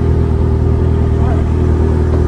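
Motorcycle engine idling steadily while the bike stands still.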